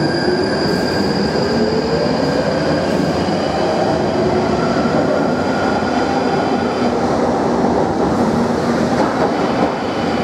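London Underground 1995 Stock train pulling out of a deep-level tube station and accelerating away into the tunnel. Its electric traction motors whine, rising steadily in pitch as it gathers speed, over a continuous rumble of wheels on rail.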